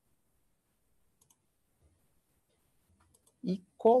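A few faint computer mouse clicks: a quick pair about a second in and a couple more near the end, made while copying text from a right-click menu and switching browser tabs.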